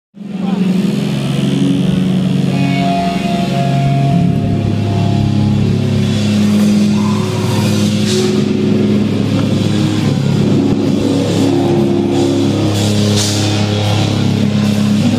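A post-hardcore band playing loud live rock, with distorted guitars holding long sustained chords that change about four seconds in, and cymbal crashes later on.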